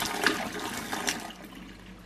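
Freshly boiled water poured from a kettle splashing into a stainless steel sink and running down the plug hole, rinsing soda crystals through the drain. The splashing fades away as the pour ends near the close.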